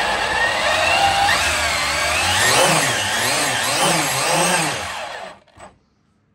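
Electric Traxxas Slash RC truck running flat out on a roller run table: its motor and drivetrain whine and its tyres spin on the bearing-mounted steel rollers, the pitch rising and falling repeatedly with the throttle. It winds down and fades out about five seconds in.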